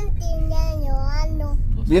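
A young child's drawn-out, wavering crying whine, lasting about a second and a half, over the steady low rumble of a moving car's cabin.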